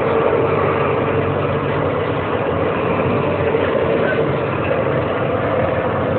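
A truck's diesel engine running steadily, heard from inside the cab as a low, even drone.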